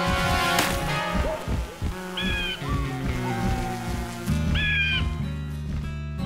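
Cartoon background music with an eagle's screech sounding twice, a little over two seconds apart.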